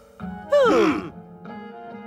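Cartoon soundtrack: a short sound falling sharply in pitch about half a second in, then soft background music with steady held notes.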